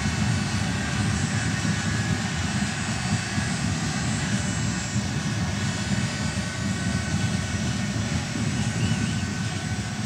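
Steady din of a large football stadium crowd, an unbroken low roar without distinct chants or claps.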